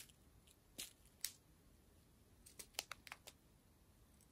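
Near silence broken by a few faint crinkles and clicks of small plastic bags of square diamond-painting drills being handled: two soft ticks about a second in, then a quick cluster around three seconds in.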